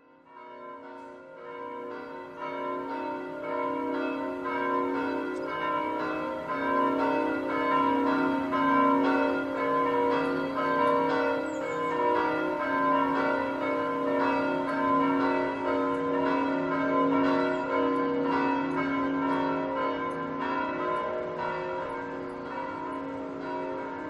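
Bells ringing in a rapid, continuous peal, the struck notes overlapping and ringing on; the sound fades in over the first couple of seconds.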